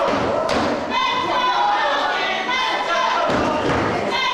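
Impacts in a wrestling ring: a sharp smack about half a second in, then a heavy thud of a body on the ring canvas a little after three seconds, over voices shouting in the hall.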